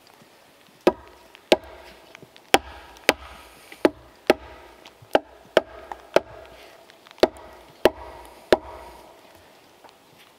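Hatchet striking a wooden log: about a dozen sharp knocks in groups of two or three, each with a short ringing note.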